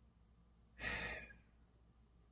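A man's sigh: a single breath out, about half a second long and trailing off, about a second in.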